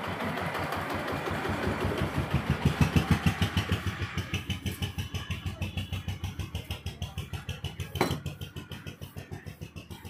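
A motorcycle engine running at low revs with an even pulse, loudest about three seconds in and then fading. A single sharp knock comes about eight seconds in.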